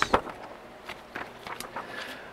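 A large printed paper insert being handled: a short crackle of paper right at the start, then faint rustles and small scattered knocks.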